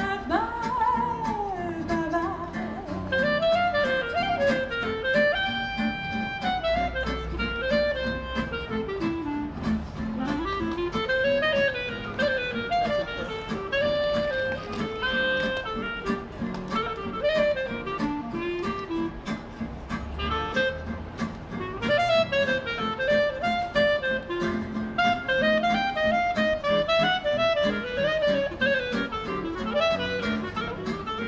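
Live jazz from a small acoustic band: a clarinet plays a winding solo melody over strummed acoustic guitar chords.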